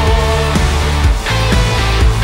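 Live band playing an instrumental rock passage: electric guitar over bass guitar and drums, with a long held lead note that ends about half a second in and a new note that starts near the end.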